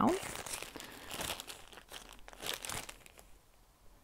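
A clear plastic bag holding a piece of cross-stitch fabric crinkling irregularly as it is handled, dying away about three seconds in.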